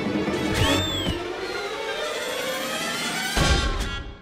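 Cartoon underscore music with slapstick sound effects: a sharp hit about half a second in, then a short rising-and-falling whistle-like tone, and a loud crash near the end.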